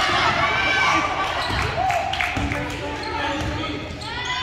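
Basketball game sounds on a hardwood gym court: the ball bouncing during play, with players and spectators calling out over it.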